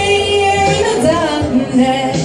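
A woman singing karaoke into a microphone over a backing track, drawing out long held notes that waver with vibrato.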